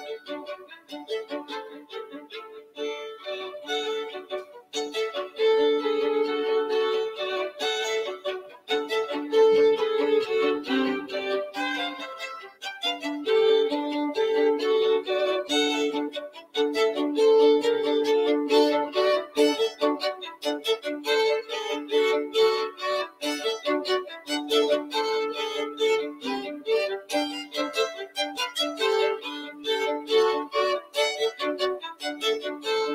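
Two violins playing a classical duet: a busy stream of short bowed notes over two voices sounding together, thinning briefly twice in the first half.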